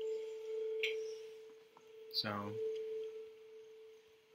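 A steady, unwavering pure tone, with a fainter higher tone above it that stops about a second in, and a short click near the one-second mark.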